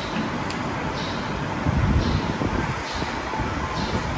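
Steady noise of a large hall, a constant hum-like haze with no clear voices, and a louder low rumble about two seconds in.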